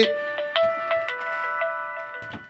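A phone ringtone playing a short electronic melody of held notes, starting about half a second in.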